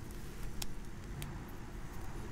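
Steady low rumble with a few faint clicks and crinkles from grafting tape being pulled and wrapped tightly around a grafted apple stem.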